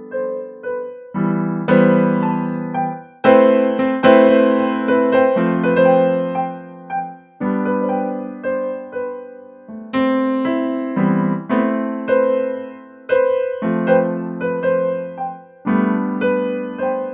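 Digital keyboard with a piano sound playing slow chords, a G major chord (G–B–D) among them, with single melody notes above. A new chord or note is struck every second or so and left to ring and fade.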